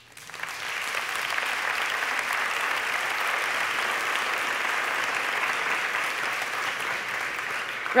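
Audience applauding. The clapping builds up over the first second, then holds steady.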